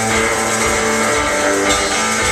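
Live alt-country band playing an instrumental passage without vocals: strummed acoustic guitar, electric guitar, upright bass and drums.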